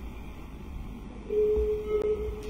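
A steady telephone-line tone: a single held pitch comes in about a second and a half in, over a low line hum.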